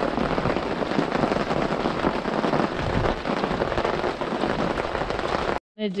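Steady rain falling, a dense even hiss of many drops, heard from under an RV awning. It cuts off abruptly near the end.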